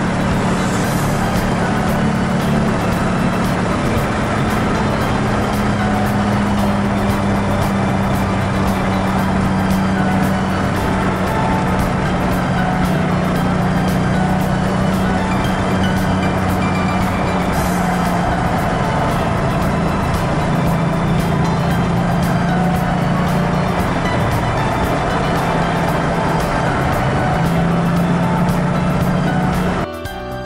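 Car engine running at a steady drone from inside the cabin, with a constant hiss of tyres on wet track pavement under it.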